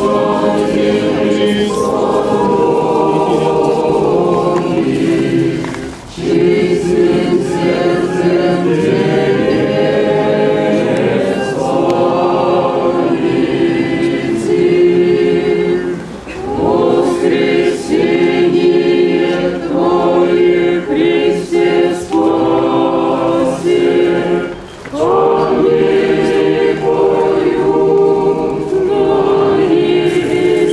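Many voices singing an Orthodox Easter church chant together, in four long phrases with brief pauses between them.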